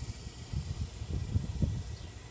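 Low, uneven rumble on the microphone outdoors, with a faint, high, pulsing insect trill behind it.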